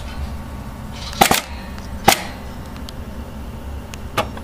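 Juki LK-1900 industrial bartacking machine humming steadily between cycles, with two sharp mechanical clacks about a second apart.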